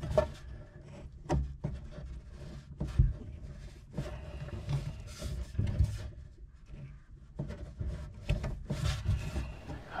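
Hands twisting nylon compression nuts off the PEX supply lines under a kitchen faucet: scattered clicks and light knocks, with plastic fittings and tubing rubbing and scraping.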